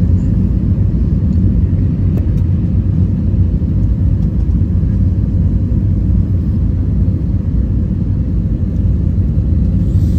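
Steady low rumble of engine and airflow noise inside the cabin of an Airbus A321 jet in flight, heard from a window seat beside the wing during the descent toward landing.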